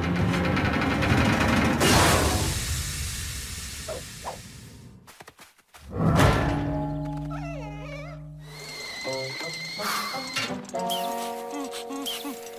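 Cartoon soundtrack: a loud rushing sound effect fades away over about four seconds, then after a brief lull a sudden hit brings in music with long held notes and chords.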